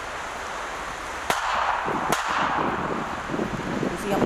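Two sharp gunshot cracks, under a second apart, in field combat audio, followed by a steady rushing noise.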